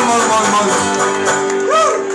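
Live acoustic band playing: banjo and acoustic guitars strummed together under a long held note. Voices rise and fall above the music near the end.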